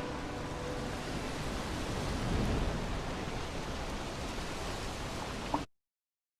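Ocean surf in the closing soundtrack of a video, a steady rushing that swells a little midway, as the last notes of music die away in the first half second. Near the end it stops abruptly with a short click, as playback ends.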